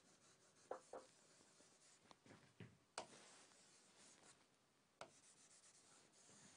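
Faint stylus strokes on an interactive display screen while circuit symbols are drawn: several light taps with soft rubbing between them.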